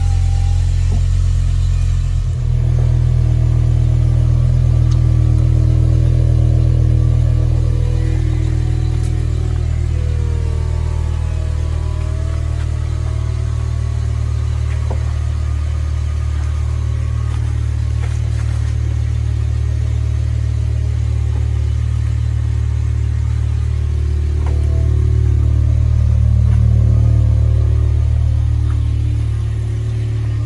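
2008 BMW M6 convertible's V10 engine idling steadily while its power soft top is raised, with faint whirring and clicks from the top mechanism over the engine; the idle swells slightly for a few seconds near the end.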